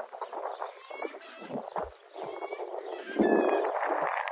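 A bull breathing and snuffling close to the microphone in rushing, unpitched breaths with a few soft bumps; a louder rush comes about three seconds in.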